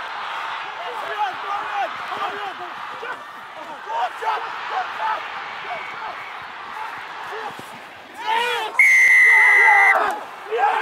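Crowd and players shouting over continuous crowd noise, swelling to louder shouts near the end. Then a referee's whistle gives one long, loud, steady blast lasting about a second.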